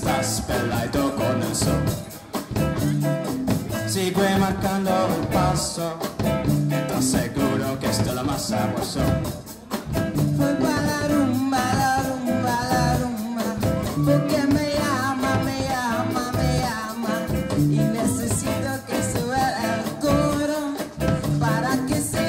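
A live pop band playing an upbeat Latin-tinged groove: drum kit with a steady cymbal beat, bass and electric guitar, with a singer's voice over it through a microphone.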